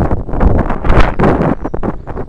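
Wind buffeting the microphone: loud, uneven gusts of noise, heaviest in the deep end.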